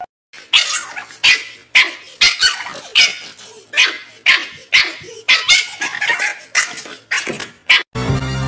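Small terrier-type dog barking in quick succession, a little more than two barks a second, alert barking at a squirrel outside a glass door.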